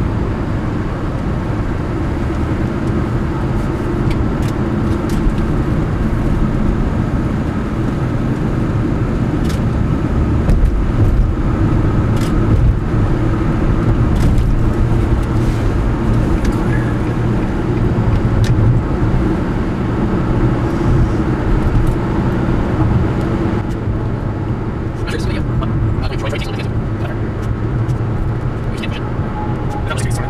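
Car driving at highway speed, heard from inside the cabin: steady road and engine noise, with a few faint clicks, more of them near the end.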